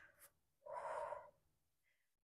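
A woman breathing hard while exercising: a short breath at the start, then one longer, louder breath from about half a second in, lasting under a second.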